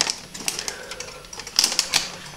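Crinkling of a clear plastic bag and light clicks as a graphics card is handled, with a denser burst of crackling about one and a half seconds in.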